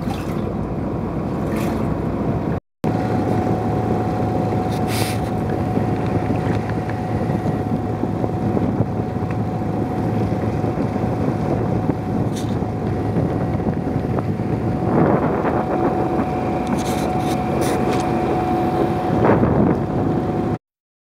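A fishing boat's engine running steadily with a constant hum, mixed with wind noise on the microphone. A short silent gap breaks it about three seconds in.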